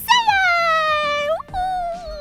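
A high, squeaky cartoon-style voice drawing out one long wordless sound that slides down in pitch and turns up sharply at the end, followed by a shorter held sound.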